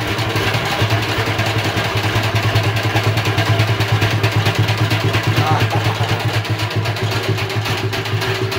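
Hand-cranked two-frame honey extractor spinning: the crank's gear drive and the frame basket whirring inside the metal drum as a steady low hum with a fast flutter, flinging honey out of the uncapped frames.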